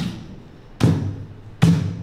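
A steady percussive beat: a sharp thump with a short ringing tail about every 0.8 seconds, three hits in all.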